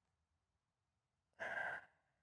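A person's short sigh, one breathy exhale about one and a half seconds in, after near silence.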